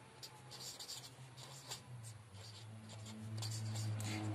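Marker pen writing on paper: a quick run of short strokes. Under it runs a low steady hum that grows louder about halfway through.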